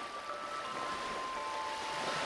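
Small waves breaking and washing up on a shore: a steady rush of surf, under soft background music with long held notes.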